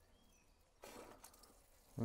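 Near silence, with a few faint bird chirps early on and a brief soft hiss about a second in.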